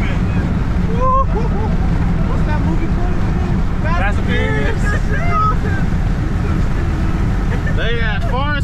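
Steady engine and road rumble inside a car's cabin while it cruises at highway speed, with a few short voice sounds over it.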